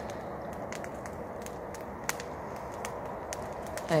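Open wood fire crackling: scattered sharp pops and snaps over a steady background hiss.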